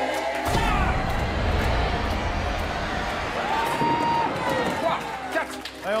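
A bowling ball hits the lane about half a second in and rolls with a low rumble for a couple of seconds. Game-show music and a studio crowd's shouts of encouragement run over it.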